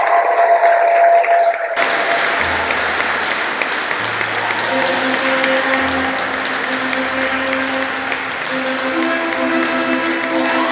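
Congregation applauding, breaking out about two seconds in, over music with long held notes and a low bass line.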